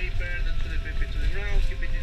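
Low, steady rumble of a bus's engine and tyres heard from inside the cabin while driving on the road, with indistinct voices talking over it.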